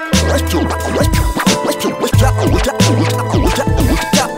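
Hip hop beat with turntable scratching over it: quick back-and-forth pitch sweeps repeating over a bass line and drums.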